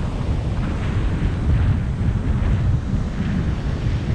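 Strong wind buffeting the microphone: a loud low rumble that rises and falls in gusts, with breaking surf faint underneath.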